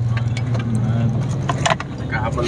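Steady low engine and road rumble heard from inside a van's cabin while driving, with a few sharp clicks or rattles about a second and a half in.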